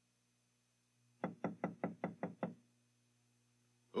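A rapid run of about eight knocks on a door, starting about a second in and lasting just over a second.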